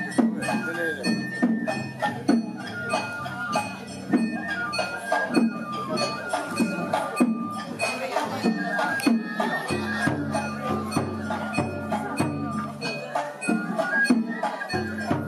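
Oyama-bayashi festival music played live: transverse flutes carry the melody over taiko drum strokes and the clinking of small hand gongs, with voices calling out. A low held note joins about ten seconds in.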